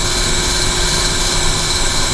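Steady, loud running-machinery noise, an even whoosh with a faint constant high whine, unchanging throughout.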